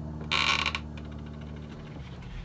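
The dial on a guitar binding bender's heating-blanket controller is turned, with a short rasping click about half a second in. Under it runs a steady electrical hum now that the blanket is switched on and starting to heat.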